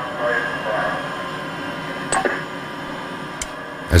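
A voice coming over the submersible's communication link to the surface, thin and hard to make out over steady hiss, with a few sharp clicks.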